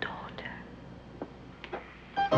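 A girl's faint whispering and breathy murmurs, with a couple of soft clicks.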